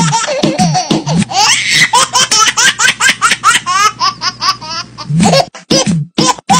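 A long run of high-pitched, rapid giggling laughter, rising syllables repeated several times a second. Background music with a beat plays under the first second and comes back near the end.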